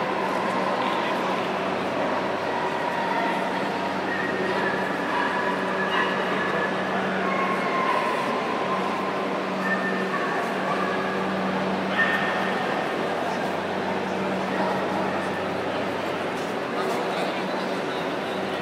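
Steady chatter of a large crowd in a big hall, with a dog's high yips and whines breaking through every few seconds.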